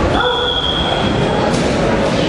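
A wrestling referee's whistle blown in one long, steady, high blast lasting about a second and a half.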